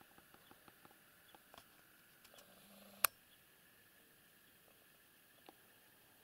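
Faint, scattered light clicks and ticks over a quiet background, with one sharper click about three seconds in.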